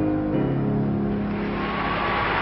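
Piano accompaniment for a floor routine, changing chord once and then holding it as the music ends. Audience applause swells up about a second and a half in and keeps building.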